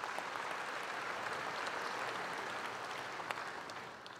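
Applause from a large seated assembly in a session hall, swelling up, holding steady, then dying away near the end.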